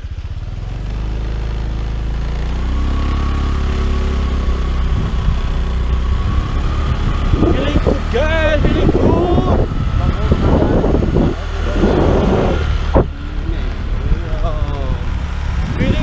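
Motor scooter engine speeding up under way, its note rising over the first few seconds, with a low rumble of wind on the microphone; voices join in about halfway through.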